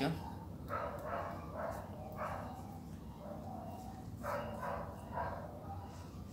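A dog barking repeatedly, in two bouts of a few short barks each: one in the first couple of seconds and another about four to five seconds in.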